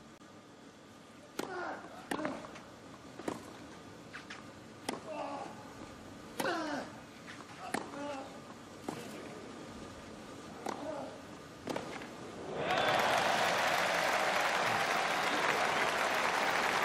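Tennis ball struck back and forth by rackets in a long rally on clay, about one crisp strike a second, several with a player's grunt. Then crowd applause breaks out about three-quarters of the way through.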